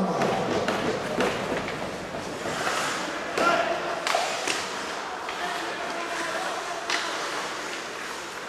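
Ice hockey play in an echoing arena: several sharp clacks and thuds of sticks, puck and boards over a steady hall din, with scattered voices of players and spectators.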